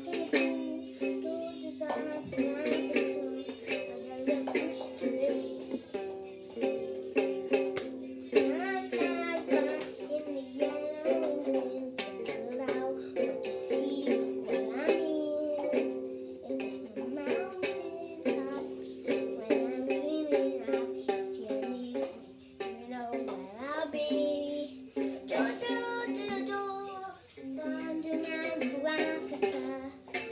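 A child singing, with plucked-string music accompanying him in a steady rhythm.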